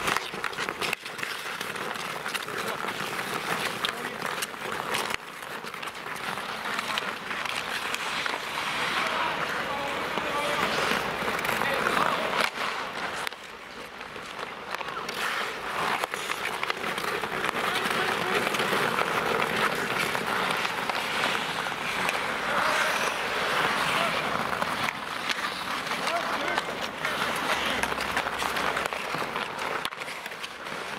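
Ice hockey play on an outdoor rink: skate blades scraping the ice and sticks clacking, under players' indistinct shouts.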